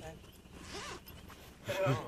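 People's voices, breaking into laughter near the end, with a short hiss about half a second in.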